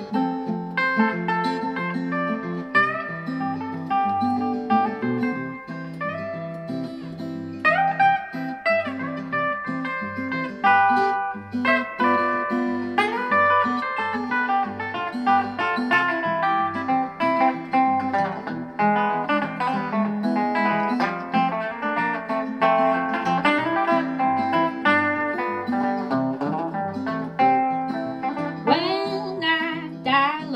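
Instrumental break played on two guitars, an acoustic guitar and an archtop electric guitar, fingerpicked over a steady, regular bass pulse, with some sliding notes in the melody.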